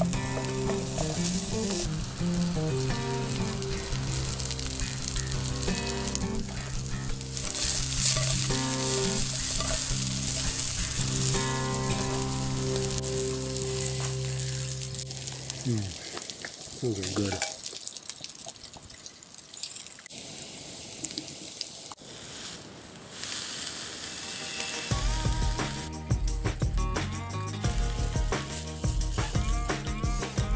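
Sliced sausage sizzling in a frying pan over a small wood-burning stove, with a fork turning the pieces. Background music plays over the first half, drops out for several seconds of frying alone, and comes back near the end.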